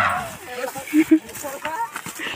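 People shouting and yelling in short, loud cries, with two sharp yells about a second in.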